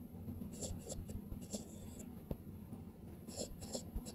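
Faint scratching and tapping of a stylus writing on a tablet screen, in short strokes about half a second in, around a second and a half, and again near the end.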